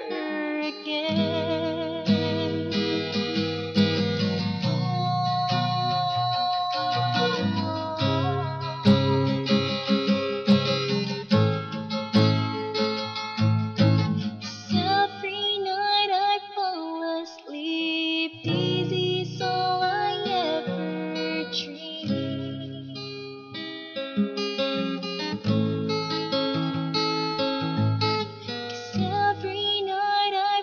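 A woman singing a slow ballad, accompanying herself on a strummed acoustic guitar.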